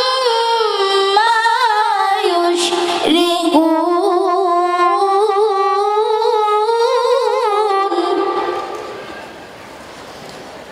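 A boy reciting the Qur'an in the melodic tilawah style into a microphone: long, ornamented held lines with wavering pitch, a short break about three seconds in, then the voice fades into the hall's echo near the end.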